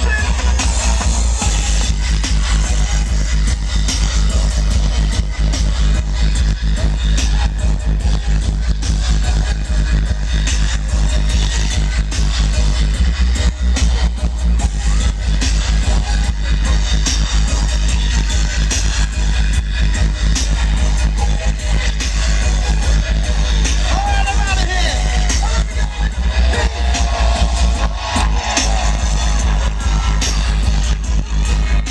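Live dubstep DJ set over a large festival sound system, heard from within the crowd: loud, heavy sub-bass under a steady beat, with a voice over the music toward the end.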